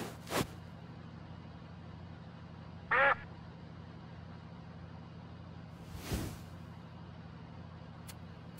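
Steady low hum under a few short sound effects: a brief soft burst just under half a second in, a short pitched call with a slightly wavering tone about three seconds in, and a soft rushing swell around six seconds.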